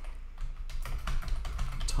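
Typing on a computer keyboard: a quick, uneven run of keystrokes as a formula is entered.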